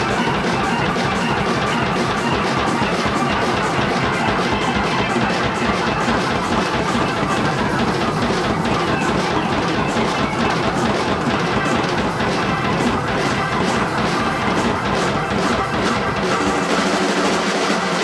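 Live blues-gospel band playing loudly: fast, busy drum-kit hits over a Hammond organ, guitars and bass. The bass drops out near the end as the tune winds down.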